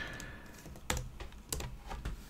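Computer keyboard typing: a few scattered, separate keystrokes, quiet and sharp.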